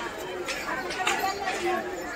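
Crowd chatter: many people talking at once, with no single voice standing out.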